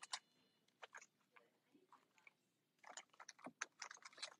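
Near silence broken by faint, scattered crackles of cellophane chipboard packaging being handled, with a small cluster about three seconds in.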